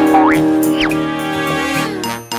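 Children's cartoon music holding a sustained chord, with a couple of quick sliding-pitch cartoon sound effects in the first second.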